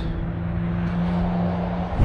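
Engine idling: a steady hum that holds one pitch, over a low rumble.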